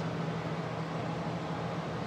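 A steady low hum with a faint even hiss, unchanging throughout, with no knocks or other events.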